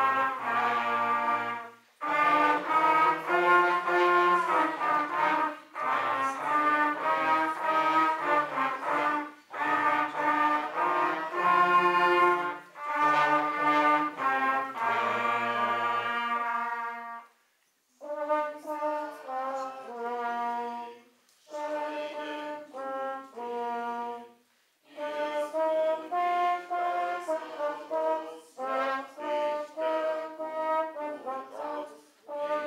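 A small brass ensemble of trumpets, baritone horns, tuba and trombone playing a song in phrases. The deep bass part drops out after a short break just past the middle, and the lighter phrases that follow are broken by two more brief pauses.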